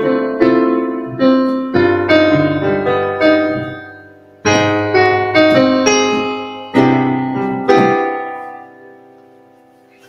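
Digital keyboard with a piano sound playing a sequence of sustained chords, Dm7–G7–Ab maj7–C maj7: the Ab major seventh is a chord borrowed from C minor (modal interchange) before the resolution to C major seven. There is a short break just after four seconds, and the last chord is left to ring and fades out near the end.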